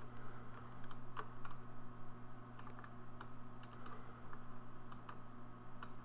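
Scattered light clicks from computer use at a desk, a mouse and keyboard being worked, about a dozen irregular clicks over a steady low hum.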